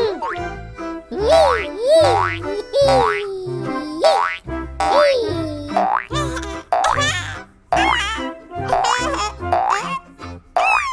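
Cartoon boing sound effects for trampoline bounces: springy sliding pitches, several each second, over bouncy children's background music with a steady bass beat.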